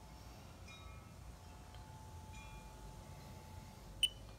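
Faint low background rumble with a few brief, soft chime-like ringing tones, one about a second in and another about halfway through.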